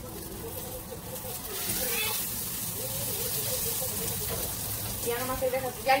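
Tortillas frying in hot oil in a pan, a steady sizzle that grows louder about two seconds in, with faint voices underneath.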